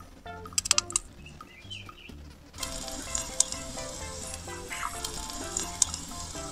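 Raw minced pork starts sizzling in hot oil in a miniature frying pan about two and a half seconds in, a steady crackling fry. Before it there are a few light clicks.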